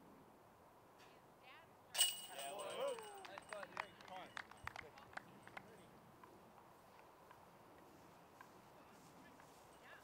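A putted disc hits the chains of a distant disc golf basket about two seconds in, with a metallic clash and ringing. The chains then rattle and jingle for a few seconds as the disc drops into the basket, marking a made putt.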